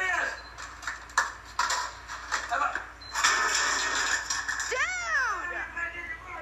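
Voices and a few sharp knocks from a video playing on a screen, heard through the device's speaker, with one drawn-out rising-and-falling cry about five seconds in.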